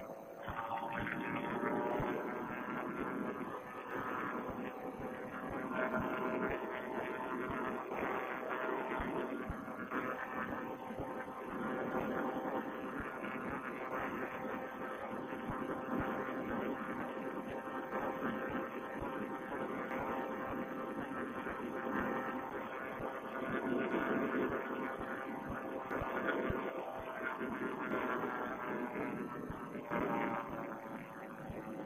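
Vittorazi Moster single-cylinder two-stroke paramotor engine running at steady cruise throttle in flight: a continuous droning hum whose pitch drifts only slightly. It sounds narrow-band, as through a headset microphone.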